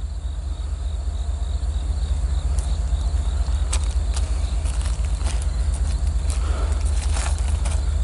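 Loaded coal train rolling past: a steady low rumble with scattered sharp clicks from the wheels, slowly growing a little louder.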